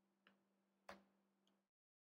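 Near silence: a faint steady low hum with two soft clicks from computer input, the second and stronger about a second in.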